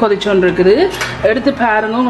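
A voice singing over a background song, with a few light clinks of a metal ladle against a clay cooking pot.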